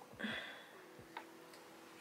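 A brief soft rustle just after the start, then a single light click a little after one second, over quiet room tone with a faint steady hum.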